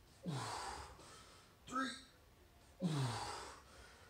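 A man's heavy, gasping exhale with a falling pitch from the strain of pulling through a horizontal pull-up (inverted row), then a second sighing exhale about three seconds in as the set ends.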